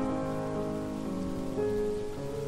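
Rain falling on a hard, wet surface, under soft piano music whose notes are fading away; a new piano note comes in about one and a half seconds in.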